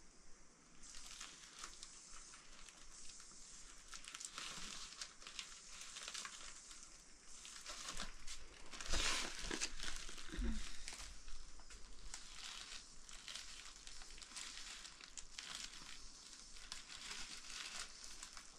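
Woven plastic sack rustling and crinkling as its mouth is handled and gathered closed with string, in irregular bursts, loudest about nine seconds in.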